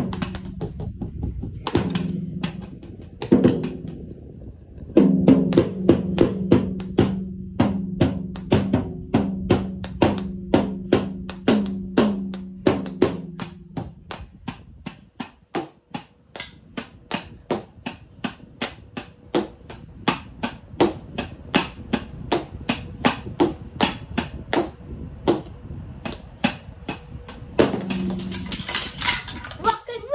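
Child beating toy drums with drumsticks in a long, steady run of sharp hits, a few a second. For the first half a held pitched tone sounds under the hits, stopping about fourteen seconds in and returning briefly near the end.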